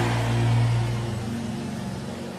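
A congregation praying and worshipping aloud over a held low chord from the church keyboard; both fade away over the two seconds.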